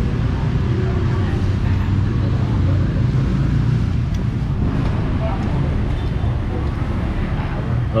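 Steady low rumble of street traffic, with faint background chatter of voices.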